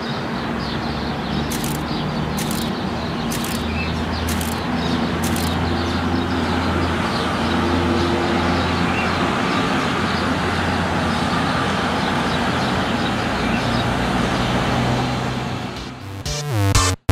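City road traffic: a steady wash of passing vehicles with a low engine hum, fading in at the start and fading down just before the end. A few short high ticks sound in the first six seconds.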